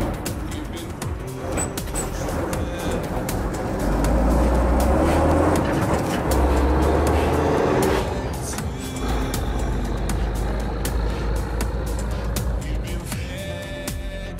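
Tatra 815 rally truck's diesel engine pulling hard up a sandy slope, loudest for a few seconds in the middle, mixed with electronic music with a steady beat.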